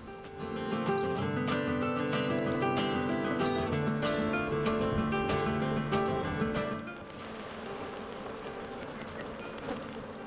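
Background music of plucked melodic notes for about the first seven seconds, over the buzzing of a mass of honeybees from an opened hive. The music stops near the end and the bee buzzing carries on alone, quieter.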